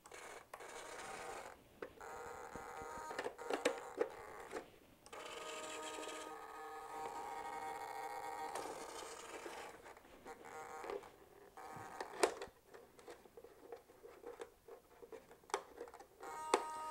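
Hobby servos faintly whining in several runs as the wing's flaps are driven through their positions from the radio transmitter, with scattered clicks of switches and handling in between.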